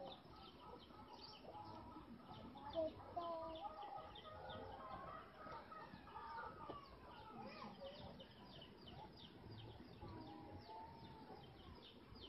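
Faint outdoor bird calls: curving, wavering calls come and go over a rapid, high chirping that repeats a few times a second.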